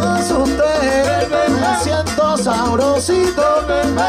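Live salsa band playing: percussion, a steady bass and melody lines over them, with a singer coming in near the end.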